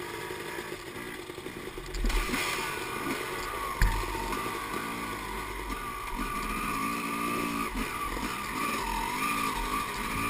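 Dirt bike engines idling, then about two seconds in the engine is opened up and pulls away, its pitch rising and falling with the throttle as the bike rides over a rough woodland trail. A single sharp knock about four seconds in.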